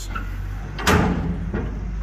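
Steel shipping-container door being unlatched and swung open, with one sudden metal clank about a second in.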